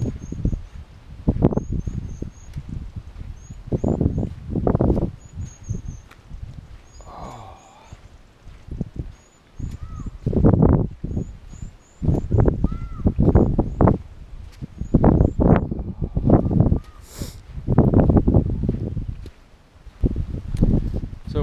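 Small birds chirping in short, high runs again and again, over irregular low rumbling bursts of noise on the microphone from wind or movement while walking.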